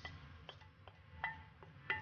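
A few faint, irregular clicks and taps as a spoon scrapes dry rice out of a ceramic bowl into a stainless steel pot.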